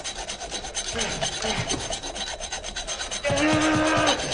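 A hacksaw rasping in quick, even strokes against a chained ankle. About three seconds in, a man's loud, held cry comes in over the sawing.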